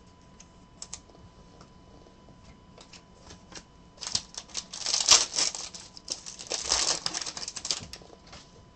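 Trading cards and foil card packs being handled on a tabletop: scattered light clicks, then from about halfway a dense run of crackly rustling and clicking.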